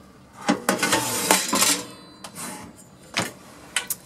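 Metal grill pan and its wire rack rattling and clattering as they are handled in the grill compartment of a Belling cooker, a run of metallic clatter from about half a second to two seconds in. A few separate knocks and clicks follow as the oven door below is opened.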